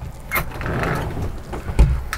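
Motorhome bathroom door being unlatched and pulled open: a sharp latch click, then the panel scraping as it moves, and a low thump near the end.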